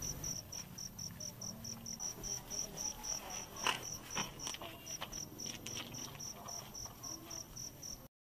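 Crickets chirping in a steady rhythm of about four chirps a second, with a few faint clicks near the middle.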